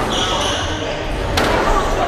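Two sharp knocks of a squash ball, one at the start and another about a second and a half later, with a short high squeak just after the first, typical of a court shoe on the sprung wooden floor.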